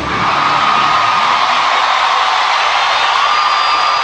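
Large concert crowd cheering, a dense, steady, loud roar, with a thin high tone held over it at the start and again near the end.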